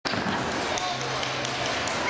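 Indistinct voices in a large sports hall, with scattered knocks and thuds.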